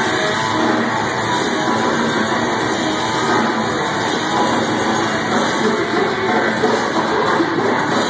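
A live metalcore band playing loud, distorted electric guitars with bass and drums, heard through the room of a club. The wall of sound stays steady throughout.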